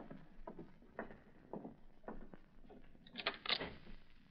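Radio-drama sound effects: footsteps crossing a floor at about two steps a second, then a quick cluster of clicks a little after three seconds in as a door is unlatched and opened.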